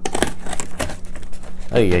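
Quick, irregular clicking and tapping of plastic toy packaging being handled while its tape is cut.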